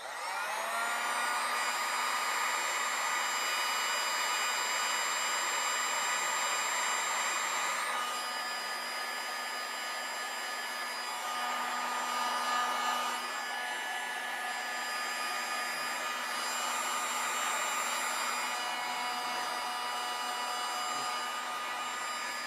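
Electric heat gun switched on, its fan motor whining up to speed, then running steadily and blowing hot air to shrink heat-shrink tubing.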